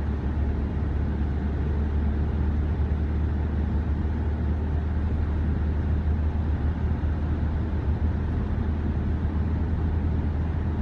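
Car driving along the motorway, heard from inside the cabin: a steady low rumble of tyre and engine noise.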